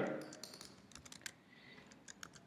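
Faint, irregular clicks of computer keyboard keys being pressed.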